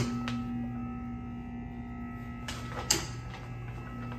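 A steady low hum, with a single sharp click about three seconds in.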